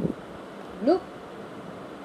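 A single short spoken word over a steady background hiss, with one light knock at the very start.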